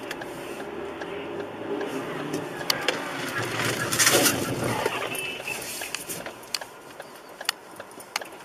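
Wind and road noise from a moving vehicle on a rider's camera microphone, with a few scattered clicks and a louder rush of noise about four seconds in, as a car crashes into a bus ahead.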